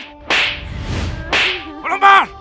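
Two sharp slap sound effects about a second apart, over steady background music.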